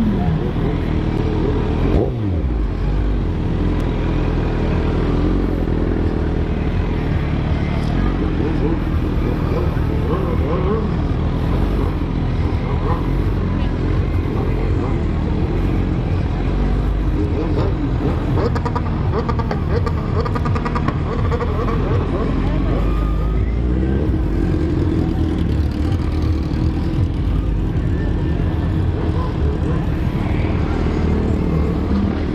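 Sport motorcycle engine running at low revs while the bike rolls slowly, with a falling drop in revs about two seconds in. Voices of a crowd are mixed in.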